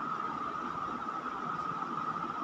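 Steady background hiss with a faint, even high hum and no speech: room noise.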